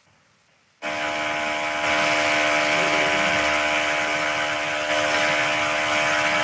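A loud, steady buzzing noise with several fixed pitches in it, cutting in abruptly about a second in after near silence.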